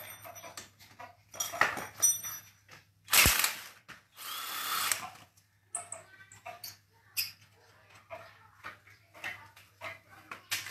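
A small handheld drill running in two short bursts about three seconds in, the second about a second long, among scattered clinks and knocks of tools.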